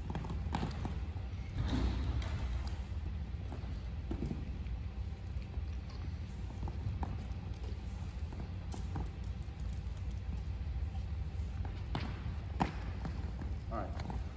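A long rubber-jacketed extension cord being hand-coiled, dragging across a hardwood gym floor, with scattered light taps and clicks as the loops are gathered. A steady low hum runs underneath.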